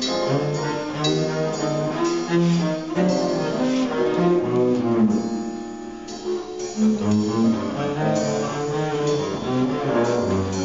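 Bowed double bass playing a slow jazz solo line, note after note.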